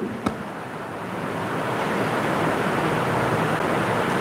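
A steady rushing noise with no tone in it, growing slowly louder over the few seconds, with one sharp click just after the start.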